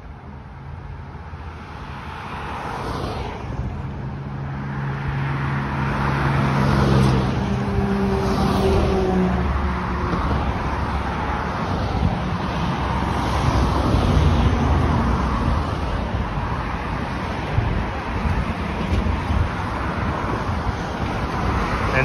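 Road traffic passing close on a multi-lane street: tyre and engine noise from cars and heavier vehicles, building up over the first few seconds and then staying loud. A heavy vehicle's steady engine hum runs through the first half.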